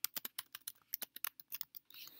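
Typing on a computer keyboard: a quick, fairly even run of key clicks, about seven a second.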